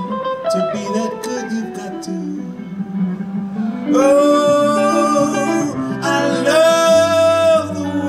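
Live band with two electric guitars: a picked guitar lick steps through single notes, then a male voice holds two long sung notes over the guitars. A bass line comes in near the end.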